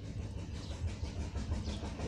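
A steady low rumble of background noise, with no speech.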